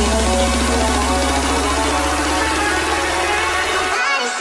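Electronic dance music backing track: a build-up in which a repeated note quickens and climbs in pitch over a steady deep bass.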